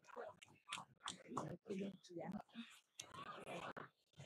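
Faint, indistinct voices of people talking in a large hall, picked up away from the microphone.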